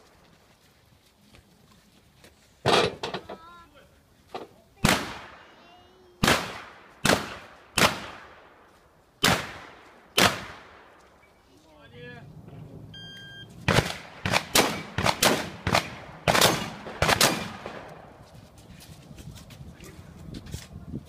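Shotgun fire during a practical shooting stage: seven single shots a second or so apart, each with a short echo tail, then after a pause of a few seconds a faster string of about a dozen shots fired in quick succession.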